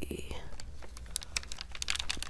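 Clear plastic carrier sheet being peeled off freshly ironed heat-transfer vinyl on denim, giving a run of small irregular crackles and clicks as it comes away.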